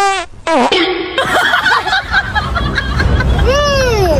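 A high-pitched, sing-song dubbed voice in short drawn-out syllables with sweeping pitch glides, over laughter and background music.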